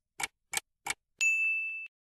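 Timer sound effect: three ticks about a third of a second apart, then a single bright ding that rings for a little over half a second.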